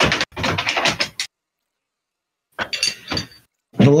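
Knocking and clinking of a wooden-stocked military rifle being taken from a wall rack and handled, in two short bursts. The sound comes through a video-call microphone that cuts to dead silence between the noises.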